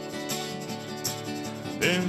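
Rock song's instrumental backing with strummed acoustic guitar, in a gap between sung lines; the singing voice comes back in right at the end.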